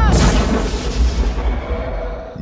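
A sudden deep boom that trails off into a low rumble over about two seconds, with a faint held tone near the end.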